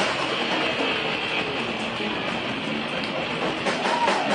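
Live rock band playing: loud electric guitar over a dense, steady wash of sound, with drum hits coming in near the end.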